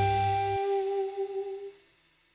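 Closing jazz music ending on one long held note. The bass drops out about half a second in, and the held note fades away just before the end.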